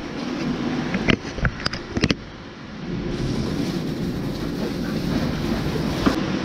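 A hose nozzle spraying at a Lely robotic milker's arm: a steady hiss starts about halfway through and cuts off at the end, over a steady machinery hum, with a few sharp knocks in the first two seconds.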